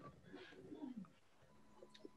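Near silence on a remote meeting call: a faint, soft sound falling in pitch in the first second, then a faint steady tone from about a second and a half in.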